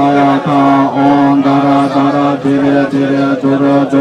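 Tibetan Buddhist monks chanting a smoke-offering liturgy on one steady low note, in even syllables about twice a second.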